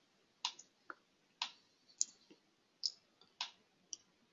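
Faint, slow keystrokes on a computer keyboard: about seven single key clicks, unevenly spaced roughly half a second apart.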